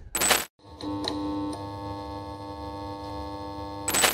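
Electronic logo sting: a short burst of glitchy noise, then a held electronic chord for about three seconds with a couple of faint ticks, cut off by another burst of noise near the end.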